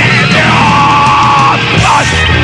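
Loud hardcore punk / heavy metal band recording: distorted guitar, bass and drums with a yelled vocal. A held high note sits in the middle, ending in a short bend in pitch.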